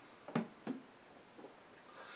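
A glass of beer being set down on a wooden box after a sip: two short knocks about a third of a second apart, then a fainter one.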